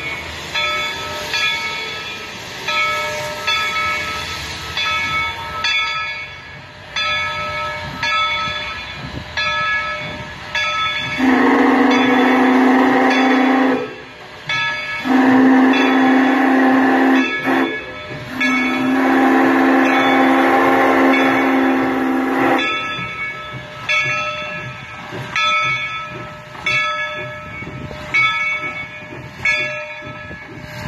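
Steam locomotive whistle blowing three long blasts, starting about eleven seconds in. Under it the locomotive's bell rings steadily with even, repeated strokes.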